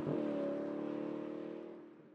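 A car engine sound effect holding a steady note and fading out over about two seconds.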